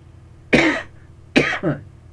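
A man coughs twice, about half a second and a second and a half in, each a sharp burst that trails off quickly.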